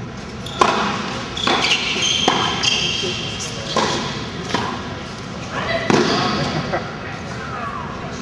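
Tennis ball being struck by racquets and bouncing on the court during a doubles rally: a series of sharp knocks, roughly a second apart, with voices in the background.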